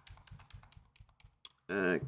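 Computer keyboard keys tapped in a quick run of about ten presses, deleting a word typed with caps lock left on. A man's voice starts near the end.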